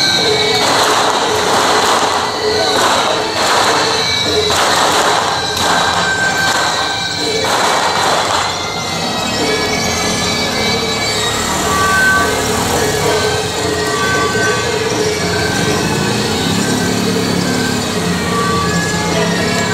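Loud temple-festival din of voices and crowd noise, with a run of harsh, noisy crashes or crackles through the first half.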